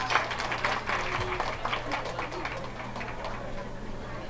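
Scattered audience clapping as a song ends, thinning out after about two and a half seconds.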